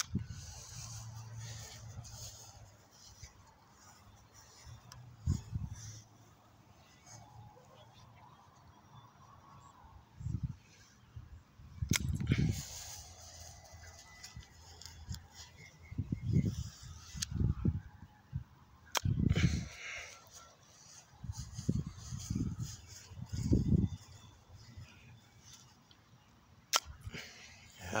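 Dull, irregular thuds and bumps of a handheld phone being carried while walking across a grass lawn, with three sharp clicks.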